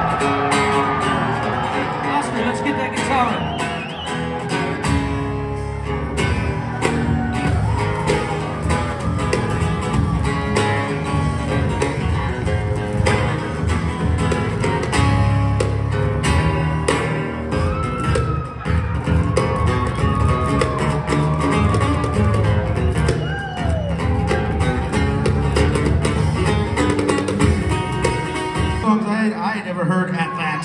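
Live acoustic band music: acoustic guitars strumming and picking a melodic lead line that slides and bends in pitch, over a steady low end. The music stops about a second before the end.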